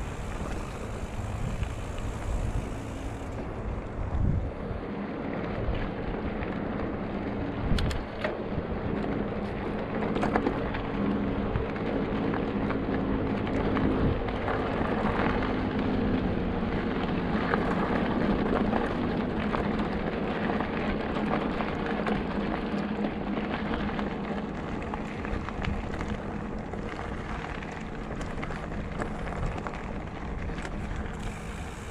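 Mountain bike rolling along a rocky dirt singletrack: continuous tyre noise on gravel and stones with several sharp knocks as the bike hits bumps, mixed with wind on the microphone.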